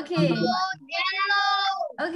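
A child's voice singing one long held note in the second half, after a brief spoken word at the start.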